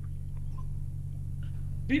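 A pause in speech filled by a steady low electrical hum, a few fixed low tones that run on unchanged under the voices on either side.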